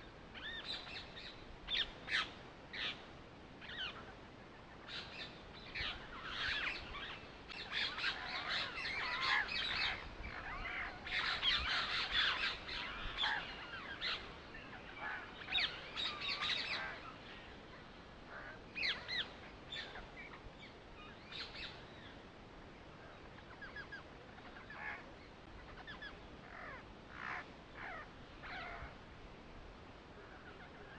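Birds chirping and calling, many short, high calls overlapping, busiest through the middle stretch and thinning out toward the end.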